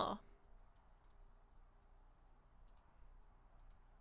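A few faint computer mouse clicks over quiet room tone, some coming in quick pairs.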